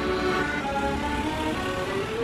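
Street accordion playing a melody of held notes that step from one pitch to the next, with a low rumble underneath.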